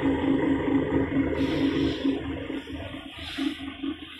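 Sesame seed washing and peeling machine running: a steady, pulsing motor hum over the rush of water and wet seed moving through it, easing off and growing quieter about halfway through.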